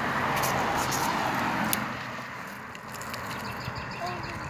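A car passing on the street, its tyre and road noise fading away after about two seconds.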